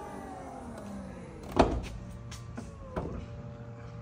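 Power liftgate of a 2023 Honda CR-V Hybrid closing: its electric motor whines steadily, slowly falling in pitch. There is a loud thump about one and a half seconds in and a smaller click near three seconds.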